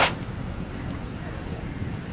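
Steady low outdoor background rumble with no distinct events, after a brief sharp hiss at the very start.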